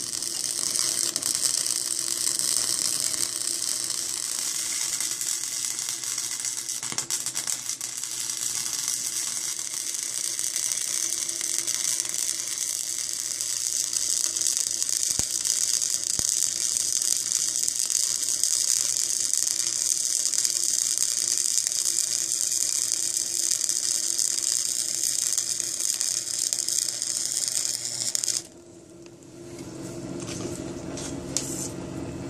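Electric arc welding on steel: one long continuous bead, a steady crackling hiss of the arc that stops abruptly about two seconds before the end.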